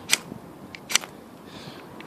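Ferrocerium fire steel struck down the spine of a TOPS BOB fieldcraft knife: two short, sharp scrapes about a second apart, with a faint tick just before the second.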